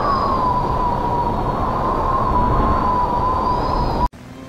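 Portal sound effect: a loud rushing noise with a thin whine over it that wavers up and down in pitch, cutting off abruptly at the end.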